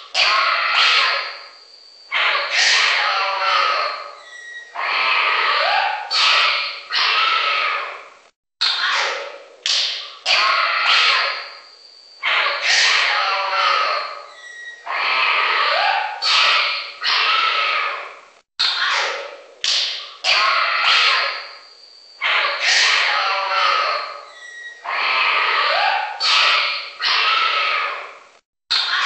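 A generated wildlife-safari soundscape of mixed animal calls and squawks, with short rising cries and clicky strokes. The same pattern of about ten seconds repeats three times, each pass broken by a brief drop-out.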